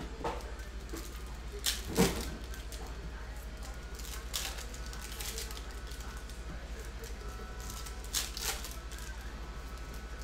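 Foil trading-card pack wrappers crinkling and cards being handled: short rustles and snaps every few seconds, the sharpest about two seconds in, over a steady low hum.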